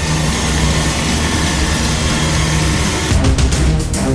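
Opening theme music of a TV drama: a dense, steady passage with a heavy low rumble, turning choppy near the end and cutting in and out several times.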